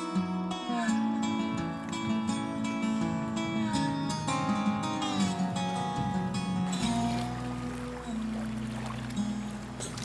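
Background music led by a plucked acoustic guitar, with a low held note coming in about seven seconds in.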